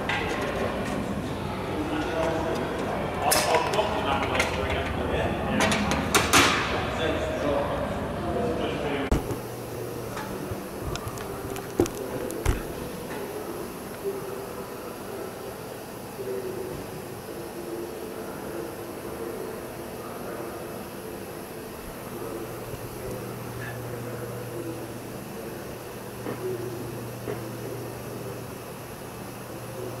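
Hand metalworking on a curved aluminium strip: clattering with several sharp metallic clicks and knocks for the first several seconds. Then a quieter workshop with a steady low hum and a couple of isolated knocks.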